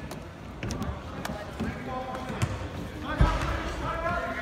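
A basketball bouncing on a hardwood gym floor during play, several irregular bounces with the heaviest thump about three seconds in, over voices echoing in the gym.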